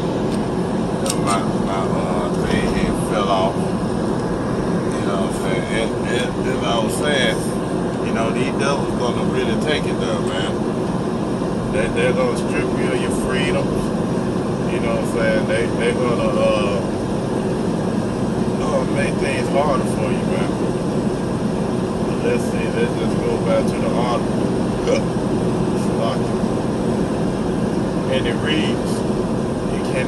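Steady road and engine noise inside a car's cabin at highway speed, with indistinct speech running over it.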